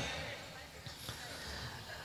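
A short pause in a man's talk: the echo of his voice fades away, leaving a faint low hum with a few soft thuds.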